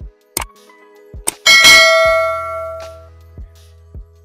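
Subscribe-button animation sound effects: a few sharp mouse clicks, then about a second and a half in a bright bell chime that rings and fades away over about a second and a half. Two more clicks come near the end.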